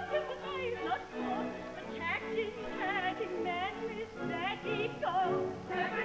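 Operetta orchestra with a chorus of women's voices singing a lively dance number. The voices slide up and down on high, wavering notes.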